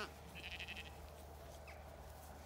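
A Zwartbles sheep's bleat cutting off right at the start, followed by a brief soft scratchy rustle about half a second in.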